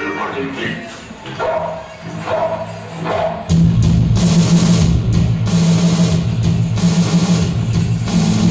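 Live noise-rock band: after a quieter stretch with a voice, electric guitar and a beat kick in loudly about three and a half seconds in and keep going.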